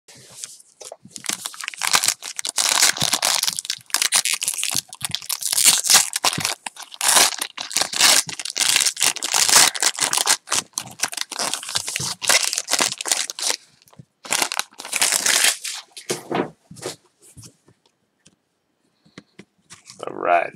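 A sealed sports-card pack's wrapper being torn open and crinkled by hand: rough tearing and rustling in quick bursts. These thin out to a few light rustles in the last few seconds.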